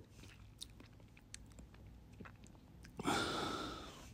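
Mostly quiet, with faint mouth clicks from the commentator close to the microphone and, about three seconds in, a short breath into the microphone that fades away in under a second.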